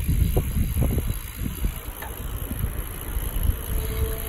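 Wind buffeting the microphone of a camera on a moving bicycle: an uneven, gusting rumble, with road noise from the ride.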